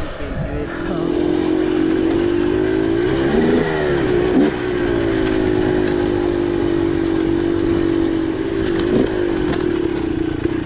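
KTM 300 two-stroke dirt bike engine running under a steady throttle while riding singletrack. The note rises and dips briefly about three and a half seconds in and again near the end with throttle changes.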